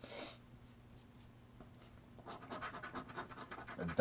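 A coin scratching the coating off a lottery scratch-off ticket in quick, repeated rasping strokes, starting a little over two seconds in. There is a brief hiss at the very start.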